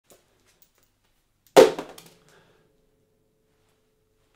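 A single sharp hit about a second and a half in that dies away within half a second, leaving a faint steady tone ringing on.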